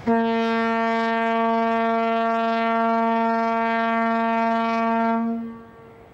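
A horn sounding one long, steady note for about five seconds, starting abruptly and then fading away.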